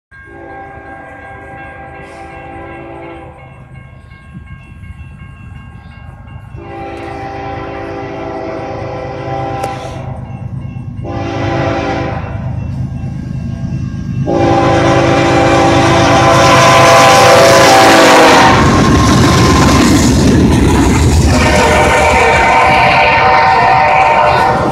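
Freight locomotive air horn sounding a chord in the grade-crossing pattern: a long blast, another long, a short, and a long, each louder as the train approaches. About two-thirds through, the locomotive passes close with a loud rumble of engine and wheels, and the horn sounds once more near the end.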